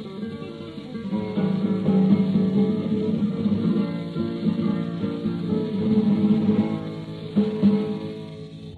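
Flamenco guitar playing a solo passage with plucked runs and strums, heard from an old record with a dull, narrow sound and a faint hiss.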